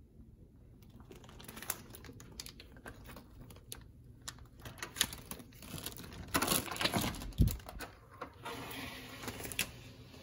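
Hotel room door being unlocked and opened: a run of small clicks and rattles from the latch and handle, busiest about six to seven seconds in, with a low thump near the end of that cluster.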